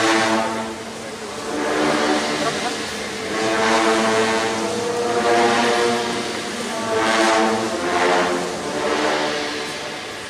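Procession band music: slow, sustained brass chords that swell and fade every second or two, as in a funeral march.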